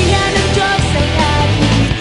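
Worship song sung by a leader on a microphone and a standing congregation, over loud amplified instrumental accompaniment with a moving bass line.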